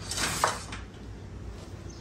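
A short clinking rattle of arrow shafts knocking together as one arrow is drawn out of a tube arrow holder, about half a second in.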